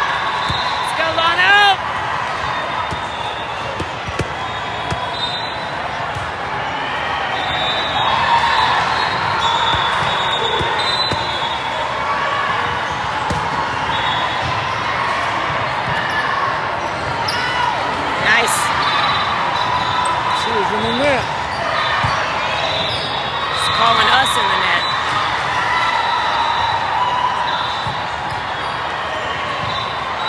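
Echoing din of a large hall full of volleyball courts: balls being bounced and struck, with a steady murmur of voices, and a few louder, sharper ball hits standing out.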